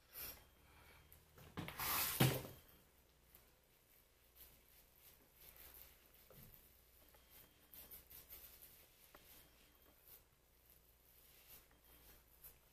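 Washcloth rubbing and wiping over the face to take off a dried clay mask: faint, scratchy scrubbing strokes, with a brief louder rush of noise about two seconds in.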